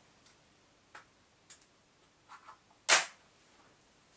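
A small screwdriver working at the lid of a container of gear grease: a few light clicks, then one loud sharp click about three seconds in.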